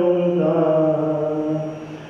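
A male voice chanting the liturgy of the Mass in long held notes, the phrase fading out near the end.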